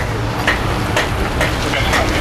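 Crisp corn tostadas being chewed close to the mic, a few sharp crunches about half a second apart, over a steady low rumble of street traffic.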